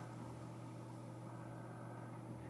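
Quiet room tone: a faint steady low hum with a light hiss.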